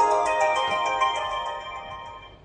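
HOMSECUR video intercom outdoor camera station playing its electronic ringtone melody, a run of bell-like notes that fades out near the end. The ringtone is the signal that the monitor's reset and pairing have succeeded.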